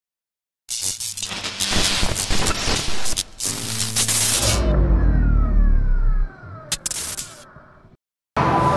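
Logo sting sound design: after a brief silence, loud static-like crackling noise, then a deep boom about halfway with a few falling tones, a sharp click near the end, and a fade-out.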